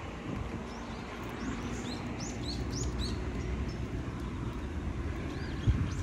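Small birds chirping a few times in quick succession over a steady low rumble of distant traffic.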